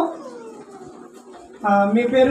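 A man's voice through a microphone: a word trails off at the start, then about a second and a half in a long drawn-out vowel begins, held steady and then wavering in pitch.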